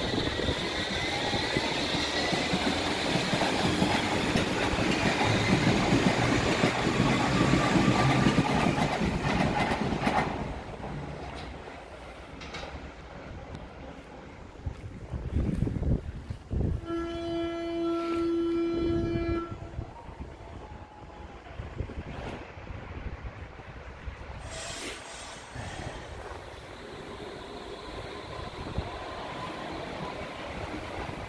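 A Berlin U-Bahn train running out of the station with a rising motor whine over rail and wheel noise, stopping abruptly about ten seconds in. Later an IK-series U-Bahn train gives a steady warning tone for about two and a half seconds, then pulls away with quieter running noise.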